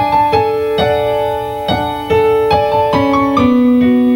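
Electronic keyboard playing piano-voiced chords and melody, notes struck about twice a second and held over one another, with no voice.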